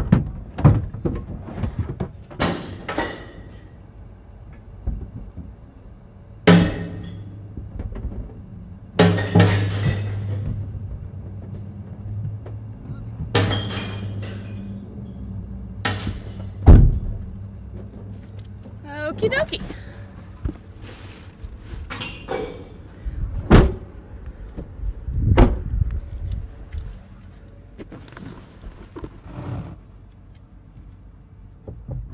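A series of loud, separate knocks and clatters with short ringing, a few seconds apart, from recyclables being handled and dropped at the bins, over a low steady hum.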